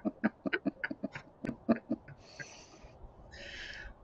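A man's breathy laughter trailing off in short pulses over the first two seconds, with a sharp click partway through, followed by two short breaths.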